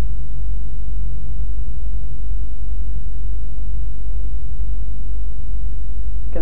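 A steady, loud low hum, with no other clear sound.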